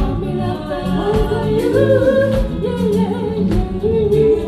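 Live band playing a song, with several voices singing long held notes over drums, bass guitar and keyboards.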